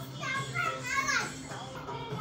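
A young child's high voice calling out wordlessly, loudest about a second in with a falling squeal, over the song playing in the background.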